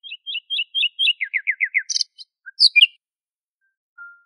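A songbird singing: a quick series of short high chirps, then a run of five falling slurred notes, then a few higher, sharp notes towards the end.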